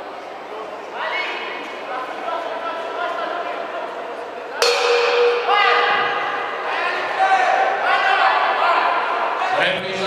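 A boxing ring bell struck once about halfway through, ringing briefly, signalling the start of a round. Around it, voices shout in an echoing hall, louder after the bell.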